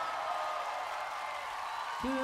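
A short gap between sung phrases: faint, even audience applause and crowd noise, under a fading held note from the accompaniment.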